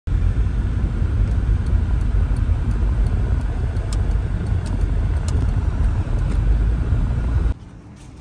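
Steady low rumble of road and engine noise inside a moving car's cabin; it cuts off abruptly near the end.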